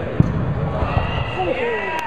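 A dodgeball striking the sports hall floor with a sharp smack about a fifth of a second in, followed by a few duller thuds, amid players shouting.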